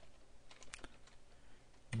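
Faint keystrokes on a computer keyboard, a few scattered clicks as a line of code is typed.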